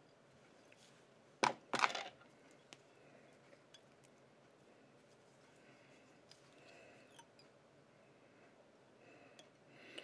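Two sharp clicks about a second and a half in, then quiet room tone with a few faint ticks, from thread and tools being handled at a fly-tying vise.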